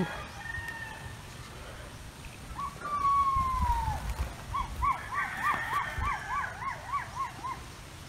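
A bird calling: one long falling whistle, then a quick run of about ten rising-and-falling notes, roughly three a second.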